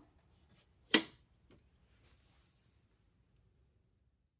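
A single sharp click about a second in, with a few faint ticks around it, then near silence.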